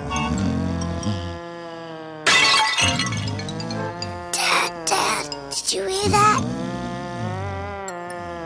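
Cartoon background music with long held notes over a sleeping cartoon father's comic snoring. Several harsh, noisy snore-like bursts come about two seconds, four and a half seconds, five seconds and six seconds in.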